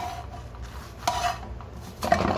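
Metal spatula scraping against a non-stick frying pan as a flatbread is turned, with one short scrape about a second in that rings briefly. A steady low hum runs underneath.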